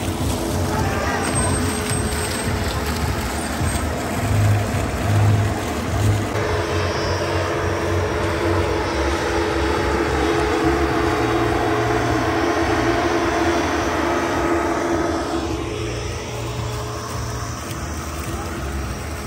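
Foam cannon's large blower fan running steadily with a droning whir as it sprays foam over the pool, a little louder through the middle and easing near the end.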